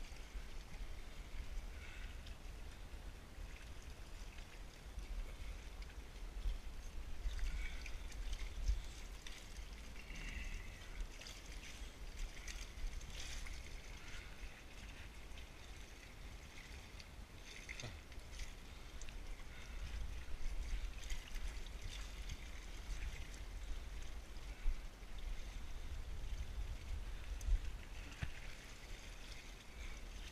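Low rumble of wind buffeting the camera microphone, with lake water lapping against the rocky shore and occasional light scrapes and knocks on rock as the climber moves.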